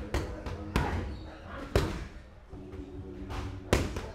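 Boxing gloves landing on focus mitts and a padded body protector during pad work: sharp smacks at uneven intervals, a few in quick succession, then a pause of about two seconds before the loudest hit near the end.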